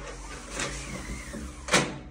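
A small electric motor whirring, its pitch bending slightly, with a sharp clack near the end.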